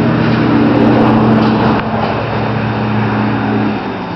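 A motor engine running with a steady hum, loud at first, then falling away and fading near the end.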